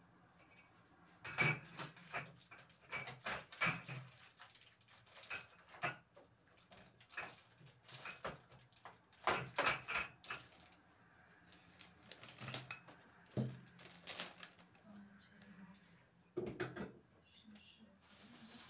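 Containers and food packages being handled in an open refrigerator: repeated knocks and clatter as bottles, jars and packs are set on the fridge's shelves, drawers and door rack, with the loudest clusters about a second and a half in, around nine to ten seconds, and near the end.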